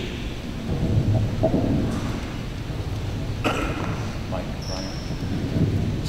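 Handheld microphone being handled between speakers: low rumbling handling noise with a sharp click about three and a half seconds in, under faint voices.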